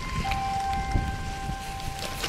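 Wind buffeting the microphone with the hiss of a giant slalom racer's skis carving across the snow. Several steady ringing tones at different pitches come in during the first second and hold through the rest.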